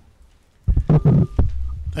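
Low thumps and rumble on a microphone as it is handled, starting about two-thirds of a second in, with several knocks over about a second.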